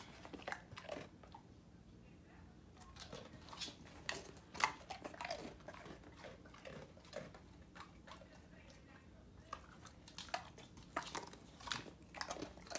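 A dog crunching and chewing animal crackers: irregular crisp crunches and clicks, busiest about four to five seconds in and again near the end, sparser in between.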